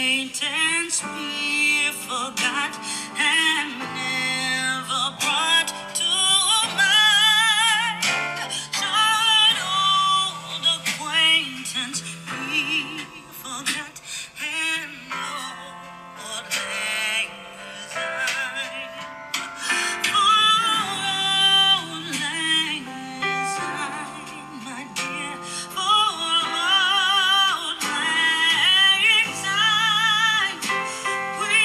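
A song with a wavering sung melody over instrumental accompaniment, played at high volume through an iPhone 12's built-in loudspeakers as a test of their sound quality.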